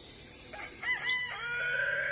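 Rooster crowing: a few short rising-and-falling notes, then one long held note.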